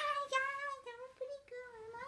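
A child singing in a high voice, holding long notes that sag slowly in pitch, with a few brief breaks and an upward slide near the end.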